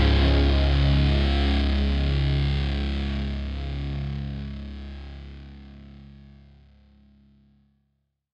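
The final chord of a country-pop song ringing out and fading away over about seven seconds, ending the song.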